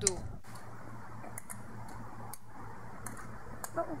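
Faint, irregular clicks and taps, about half a dozen spread unevenly, over a low steady hum.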